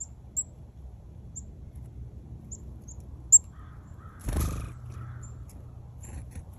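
Short, high chirps of a black-capped chickadee scattered through, with a sharp click a little past three seconds. Just after four seconds comes a louder, harsher sound lasting about half a second.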